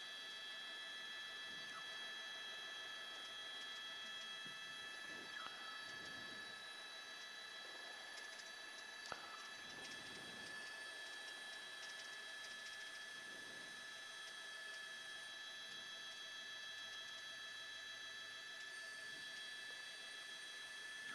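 Faint steady whine of several high, unchanging tones over a low hiss on a helicopter's intercom audio line, with a single click about nine seconds in.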